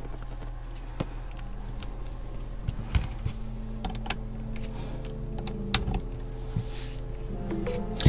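Soft background music with sustained notes, over a few light clicks and taps as a charging cable is plugged into a 12-volt USB adapter.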